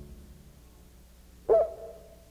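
The song's final acoustic guitar chord dying away, then about one and a half seconds in a single short, loud call that bends in pitch, leaving a faint held tone.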